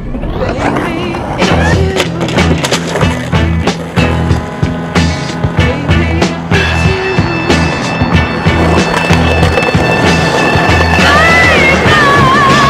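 Skateboard wheels rolling on pavement, with a run of sharp clacks from the board popping and landing in the first half, mixed under music with a steady bass line.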